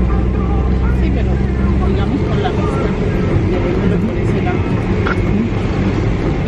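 Car driving, heard from inside the cabin: a steady low engine and road drone, strongest in the first two seconds, under people talking.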